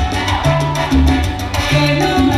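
Salsa music with a repeating bass line and steady percussion.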